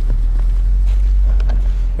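2020 Range Rover Sport plug-in hybrid crawling over mud and snow in low range on its two-litre turbocharged four-cylinder: a loud, steady low rumble with a few faint clicks.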